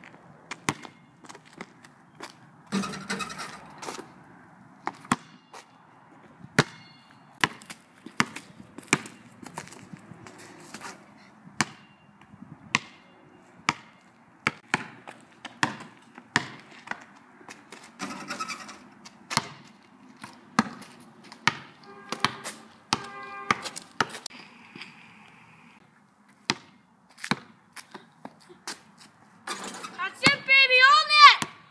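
A basketball bouncing on asphalt as it is dribbled and shot: a long string of sharp, irregularly spaced thuds.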